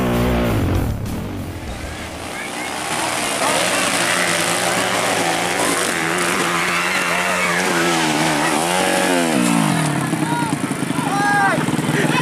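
Dirt bike engine revving up and down under load on a trail climb, its pitch rising and falling several times. People's voices shout over it near the end.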